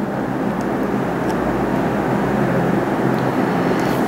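Steady, even rushing background noise with a faint low hum, unchanging for the whole stretch: a constant mechanical drone, such as a fan or air-conditioning unit.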